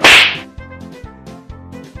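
A single loud, sharp crack right at the start, fading out within about half a second, over background music with a steady beat.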